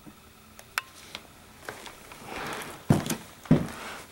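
Handling noise: a few faint clicks, a brief rustle, then two sharp knocks about half a second apart near the end.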